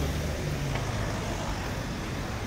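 Steady outdoor city background noise: a traffic-like rumble and hiss with no distinct events.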